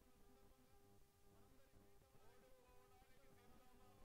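Near silence, with a faint steady hum.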